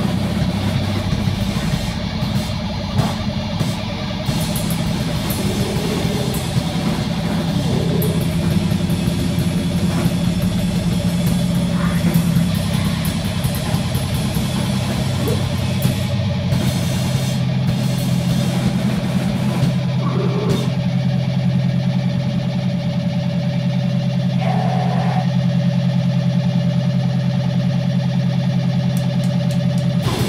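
Sustained droning feedback and noise from a live grindcore band's amplified guitars and bass: steady low tones held without a drumbeat, with a few brief higher squeals over them.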